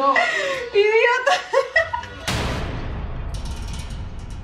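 Laughing, wordless voices for about the first second and a half. Then a low rumble and a sudden loud hiss of noise that dies away slowly, with a brief high, fine rattle near the end.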